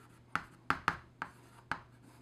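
Chalk writing on a chalkboard: about five short, sharp chalk strokes and taps spread across two seconds.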